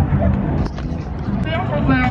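Indistinct voices over a steady low rumble, with a short voiced phrase near the end.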